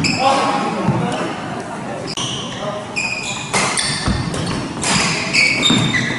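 Badminton doubles rally on a wooden hall floor: court shoes squeak sharply and repeatedly as the players lunge and shuffle, and rackets strike the shuttlecock with short cracks, all with a large hall's echo.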